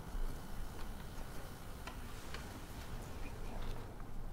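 Ticking of an analog game clock on the table by the checkerboard, with a few sharp, unevenly spaced ticks over a low background hum and a low thump just after the start.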